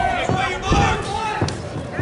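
Voices from around the ring over a few dull thuds, about four in two seconds, from the kickboxers fighting in the ring; the loudest thud comes just under a second in.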